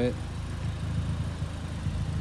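A car engine idling steadily: a low, even hum.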